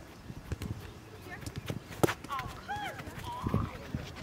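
Soccer balls being struck on an artificial-turf pitch: scattered short thuds, with one sharp, loud strike about two seconds in. Players' voices call out faintly in the background.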